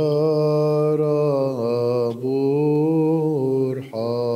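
A male voice singing Byzantine liturgical chant, drawn-out held notes in two long phrases with a brief breath a little after two seconds in, each phrase sliding down at its end.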